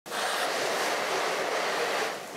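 Fire burning through a building's roof and rooms, a steady crackling noise.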